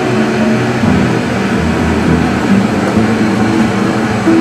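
Steady mechanical background hum with no sudden events.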